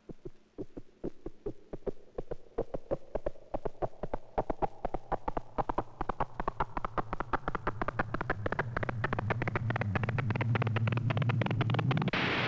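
Soundtrack suspense cue: rapid repeated pulses that speed up and rise steadily in pitch, with a low hum swelling beneath them in the second half, building tension.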